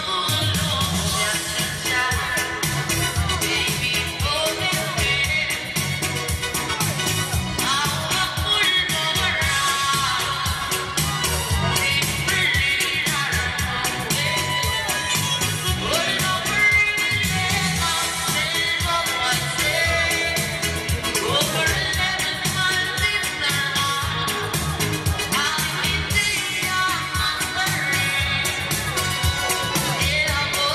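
Music with singing over a steady beat.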